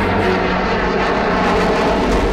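Fighter jet flying past overhead, its jet engine loud and steady throughout.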